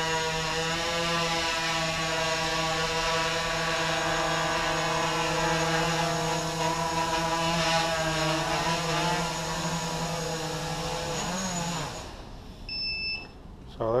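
Quadcopter's four MS2208 brushless motors spinning 8-inch props, a steady multi-toned hum that winds down in pitch about eleven seconds in and stops. A single short electronic beep follows.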